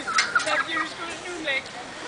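Several short, high-pitched shouts in a child's voice over the steady wash of surf.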